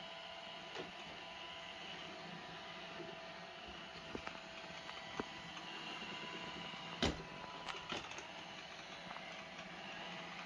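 iRobot Roomba S7 robot vacuum driving about on carpet, its motors giving a faint steady whine. There is one sharp knock about seven seconds in, with a few lighter clicks scattered before and after it.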